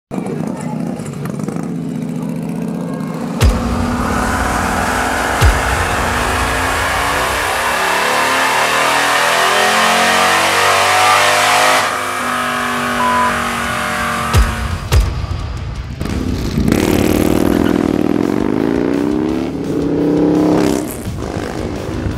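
A Harley-Davidson Road Glide Special's big-bore 130-cubic-inch Milwaukee-Eight V-twin revving on a dyno. In a long pull the pitch climbs steadily for several seconds before it cuts off suddenly, and a second, shorter rising run follows near the end. A few sharp thumps land between the runs.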